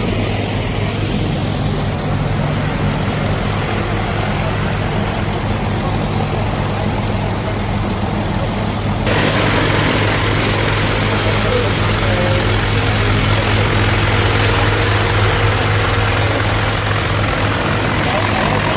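A light training aircraft's piston engine and propeller running steadily at idle, an even low hum. About halfway through, a louder hiss comes in over it.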